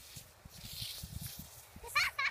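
Water spraying from a garden sprinkler hose onto grass, a soft steady hiss. Just before the end a child's high-pitched squeal or call starts, the loudest sound here.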